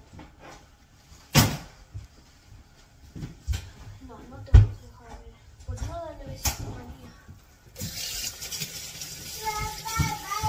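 A few sharp knocks over faint background voices; about eight seconds in a steady hiss starts, and music with singing comes in near the end.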